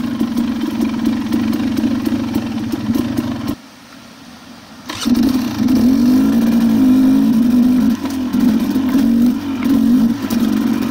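KTM dirt bike engine running under a rider on a trail, its pitch rising and falling with the throttle. The sound drops away suddenly for about a second midway, then the engine is heard again.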